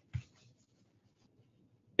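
Near silence in a pause of the narration, broken by one short soft noise just after the start, such as a breath, a mouth sound or a click, with a few faint traces after it.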